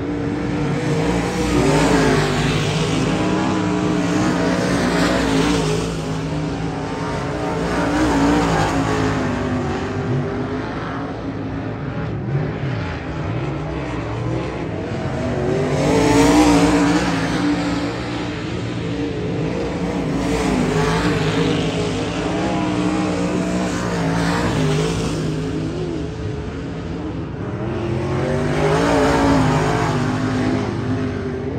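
Dirt-track race car engine at full throttle on a timed qualifying lap, the engine note rising and falling as it comes off and into the corners and swelling and fading as the car goes around the oval, loudest about 16 seconds in.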